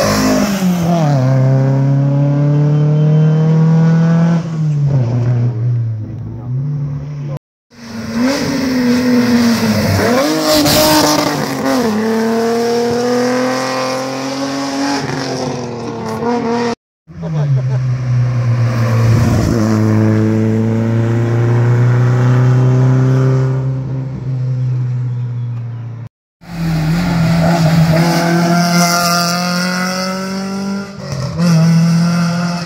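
Historic competition car engines running hard as cars pass one after another, the first a Lancia Fulvia coupé's V4, with engine pitch rising on acceleration and dropping at gear changes and lifts. The sound stops dead three times for under a second, about 7, 17 and 26 seconds in, at edit cuts between passes.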